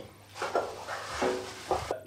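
A plastic bag rustling as it is pulled off an appliance, followed about halfway through by a brief snatch of music with a couple of held notes.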